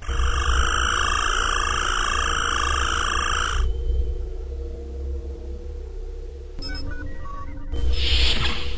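Star Trek-style transporter beam sound effect: a shimmering, warbling tone with high sparkle that starts suddenly and cuts off after about three and a half seconds, over a steady low starship hum. The hum carries on afterwards, with a few short electronic beeps near the end.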